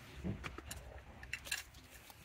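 A few scattered light metallic clinks as a 17 mm nut and a socket tool are handled and fitted onto the steering-wheel shaft.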